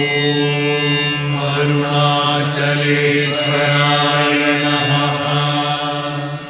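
Hindu devotional mantra chant: one long, steady chanted tone with rich overtones that tapers off near the end.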